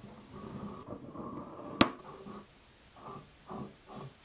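A metal cylinder with a resin-filled centre being slid down over a threaded steel rod onto an aluminium plate: rubbing and scraping as it goes down, one sharp metallic click a little under two seconds in as it seats, then a couple of softer knocks near the end.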